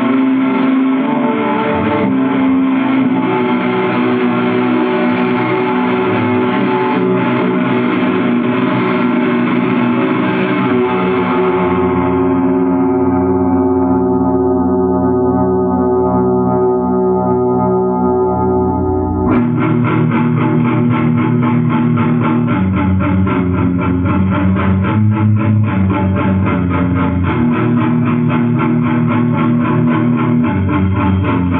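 Metal band's demo-tape recording with distorted electric guitar. About twelve seconds in, the sound dulls as its top end fades away, then about nineteen seconds in the full band comes back suddenly with a fast, even pulse.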